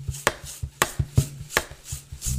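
Body percussion: sharp hand claps and taps in a quick, uneven rhythm of about four a second, over a faint low steady tone.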